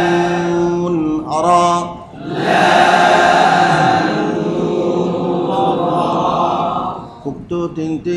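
A man's voice chanting Quranic Arabic through a microphone in long held notes. About two and a half seconds in, a group of voices recites together in unison for several seconds, followed by short clipped syllables near the end.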